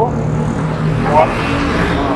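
Street traffic: a motor vehicle engine running steadily, with a rushing swell partway through like a vehicle going past.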